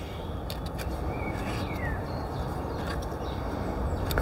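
Steady outdoor background rumble, with one short falling bird chirp about a second and a half in and a few faint light clicks.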